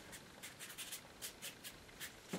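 Faint, quick strokes of a wide flat hake brush swept across damp watercolour paper, a series of short soft scratches laying in a sky wash.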